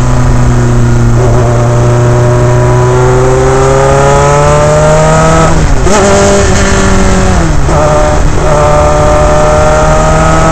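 Onboard sound of a Dallara Formula 3 car's Alfa Romeo four-cylinder racing engine under load, the note climbing steadily as the car accelerates. A sharp break in the note comes about six seconds in; about a second and a half later the revs fall quickly with short blips through downshifts, then climb again near the end.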